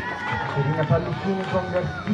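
A voice over the arena's public-address system, with music behind it.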